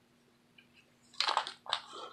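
Stiff, layered paper pages of a handmade junk journal rustling and crinkling as a page is turned, in two short bursts after about a second of quiet.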